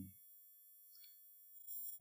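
Near silence, with only faint, thin, steady high-pitched tones.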